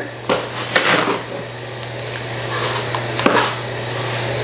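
Measuring sugar into a stand mixer: a few knocks of a measuring cup against a plastic bin and the steel mixer bowl, with a short hiss of sugar pouring about two and a half seconds in, over a steady low hum.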